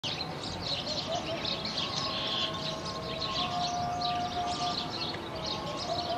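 Birds chirping busily in quick, high calls, with a few faint steady tones held underneath.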